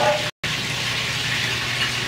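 Steady hissing noise over a low hum. The sound cuts out completely for a split second near the start.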